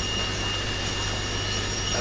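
Steady hiss with a low hum and a faint high-pitched whine underneath, no speech: the background noise of an old analogue camcorder recording in a room.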